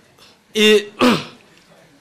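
A man clearing his throat into a stage microphone with a two-part voiced "ahem": the first part is held on one pitch and the second falls.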